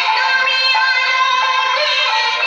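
A prayer song sung in long, held notes.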